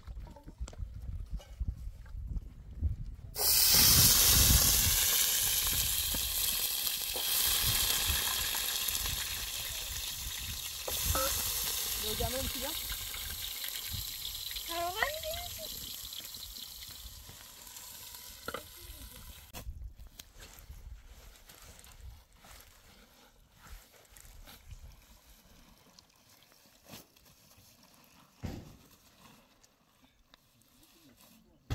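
Food sizzling in a pan of hot oil over a wood fire. It starts suddenly a few seconds in, is loudest at once, fades slowly, and breaks off abruptly about two thirds of the way through.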